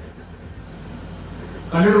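Crickets chirping faintly and steadily in the background during a pause in a talk, until a man's voice starts again near the end, louder than the crickets.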